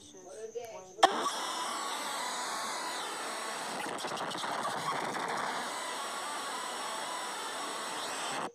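Distorted "earrape" meme audio: a harsh, dense wall of clipped noise with faint wavering tones in it, cutting in suddenly about a second in and holding at an even level. Before it, a faint voice clip runs briefly.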